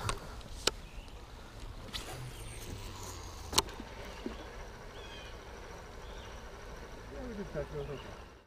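Fishing gear being handled in a small aluminum boat: a few sharp clicks and knocks, three in all with the loudest about halfway through, over a steady low rumble.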